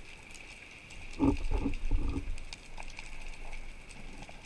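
Muffled underwater sound picked up by a camera in its housing: a steady hiss with faint scattered clicks. About a second in comes a low rumble in three quick pulses, lasting about a second.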